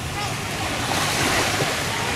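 Beach ambience: small waves washing onto a sandy shore in a steady, even wash, with wind rumbling on the microphone.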